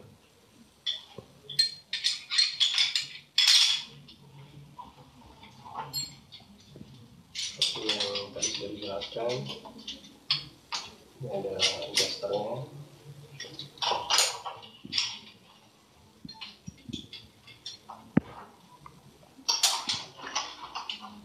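Metal snap hooks and carabiners on a fall-arrest harness and rope lanyard clinking and jingling against each other as they are handled, in irregular clusters of short clinks.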